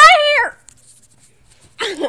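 A dog whining twice: a loud, high, wavering whine of just under a second, then a shorter one that falls in pitch near the end.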